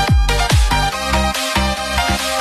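Vinahouse electronic dance music with a heavy kick drum on every beat, a little over two beats a second, under bass and synth chords. The kick and bass drop out briefly about one and a half seconds in.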